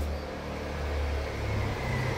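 A steady low rumble with an even hiss over it, beginning just before this moment.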